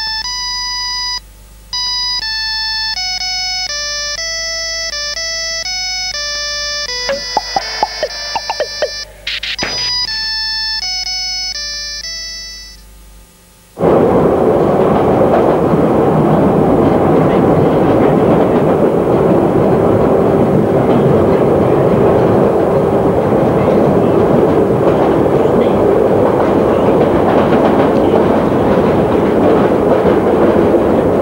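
A simple beeping mobile-phone ringtone melody of single stepped notes, with a few sharp clicks about eight to ten seconds in, fading out just before halfway. Then the louder, steady rumble and rattle of an underground train carriage in motion.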